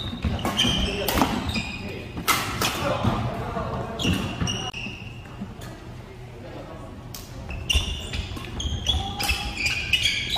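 Badminton doubles rally on a wooden hall floor: sharp racket-on-shuttlecock hits, short high shoe squeaks and footfalls, busy at first, quieter for a couple of seconds in the middle, then picking up again near the end.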